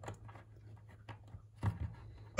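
Faint clicks and rattles of 3D-printed plastic gears being pressed over the snap pegs of a fidget heart's base, with a slightly louder pair of clicks near the end.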